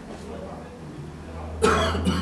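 A man coughs once, sharply, about one and a half seconds in, over a low steady hum.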